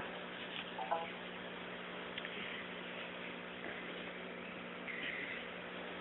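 Low steady background hiss with a faint steady hum, broken by a few small clicks and a brief faint blip about a second in.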